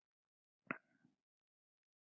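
Near silence, broken by one short, faint click about two-thirds of a second in.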